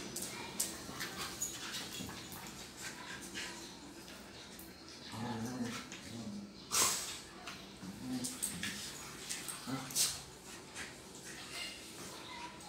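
Two dogs play-wrestling, making low growls and whimpers in short bouts, with sharp knocks from their scuffling, loudest about seven seconds in and again at ten seconds.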